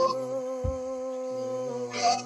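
Worship singing: a voice holds one long hummed note over a steady keyboard chord.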